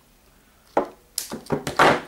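A few sharp clicks and knocks starting about three-quarters of a second in, the loudest near the end: side cutters snipping off the tail of a nylon cable tie and being set down on the table.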